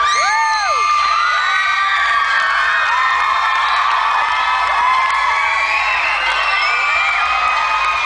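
A crowd of young children cheering and screaming, many high-pitched shrieks rising and falling over one another.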